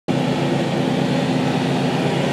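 Steady ventilation hum with hiss, a low drone of a few steady tones under an even noise.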